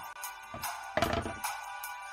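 Background music with a steady drum beat, with a deep bass drum hit about a second in.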